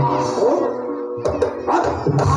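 Live Javanese gamelan-style music for a barongan dance: sustained pitched tones over drumming, with a voice sliding up and down in pitch twice.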